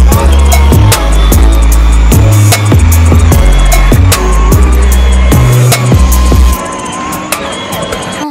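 Electronic background music with a heavy bass line and a steady drum beat; the bass drops out near the end.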